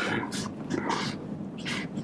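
Quiet, breathy laughter in a few short puffs during a pause in the talk.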